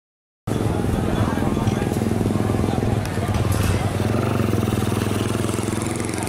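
Busy market ambience cutting in about half a second in: an engine running steadily, with indistinct voices of a crowd.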